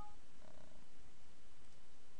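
Steady low room tone: a faint hiss with a low hum and no distinct events. The last of a computer alert chime dies away at the very start.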